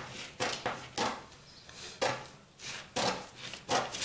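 Scissors snipping through brown pattern paper, a cut roughly every second, five or six in all.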